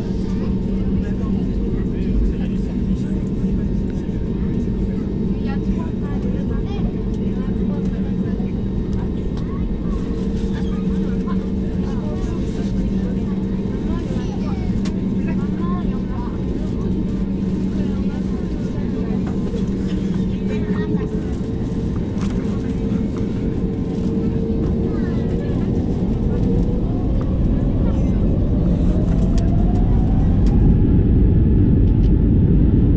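Airbus A320's jet engines heard from inside the cabin, humming steadily at low power while the aircraft taxis onto the runway. In the last few seconds a rising whine and growing loudness come in as the engines spool up toward takeoff thrust.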